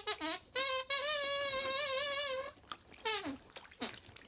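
A glove puppet's squeaker voice, the high reedy whistle that stands in for a dog's speech: a few short wavering squeaks, then one long held squeak with a slight wobble, and a short falling squeak near the end.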